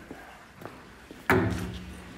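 A faint click, then a single sudden bang against the stable door, with a short low ring that fades after it.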